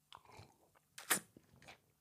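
People sipping and swallowing beer close to the microphone: a few faint, short mouth noises, the loudest a brief sip about a second in.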